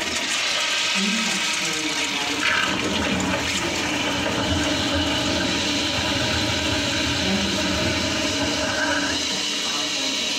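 Tankless commercial toilet flushing: a steady rush of water swirling through the bowl and refilling it.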